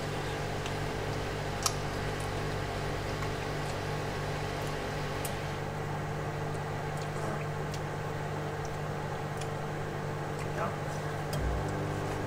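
Samsung microwave oven running: a steady low hum with a few light clicks of a metal fork against a plastic food tray.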